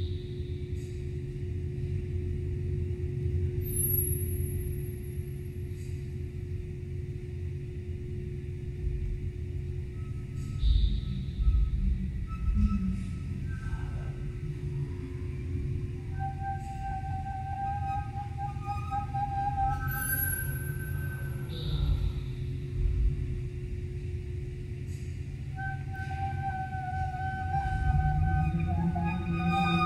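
Experimental music built from whale recordings and live instruments: a deep low drone with a steady low hum underneath, short high chirps and a thin high whistle recurring a few times. About halfway through, wavering sustained tones enter over the drone.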